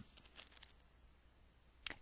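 Near silence: room tone with a low hum and a few faint short clicks, one just before the end.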